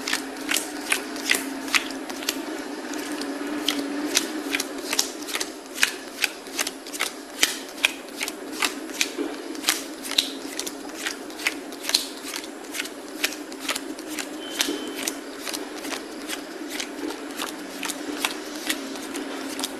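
Playing cards being laid down one by one onto a table, a sharp snap about two to three times a second, over a steady low hum.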